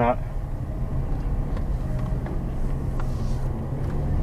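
Steady low hum and rumble of a car's engine and tyres heard inside the cabin while driving.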